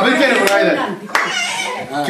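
A group of people talking loudly over one another, with a couple of sharp hand claps about half a second and a second in.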